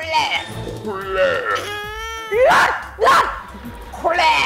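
A man's exaggerated, wavering vocal warble, a quivering pitched sound held for under a second near the middle, followed by two loud bursts of laughter.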